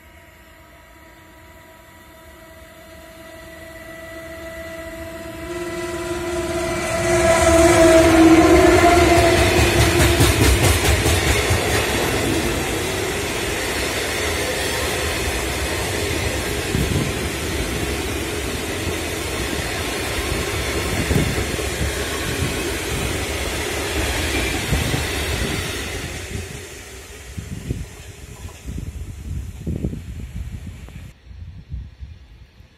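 A train approaches and passes close by at speed. A long, steady horn note grows louder over the first ten seconds or so. Then come the rumble and clickety-clack of the wagons running past for about fifteen seconds, which fade near the end.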